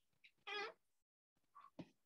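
Near silence, broken about half a second in by one short, high-pitched squeak, with a faint knock near the end.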